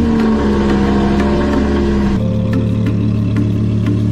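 Lamborghini Huracan LP610-4's V10 engine, fitted with a catless Fi valvetronic exhaust, at high idle just after start-up, its pitch easing down slightly at first. About halfway through the note changes abruptly to a different steady idle.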